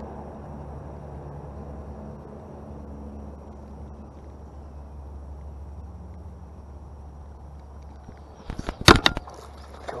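Low steady background for most of it, then near the end a short burst of sharp knocks and clatter close to the microphone: a spinning rod and reel being handled.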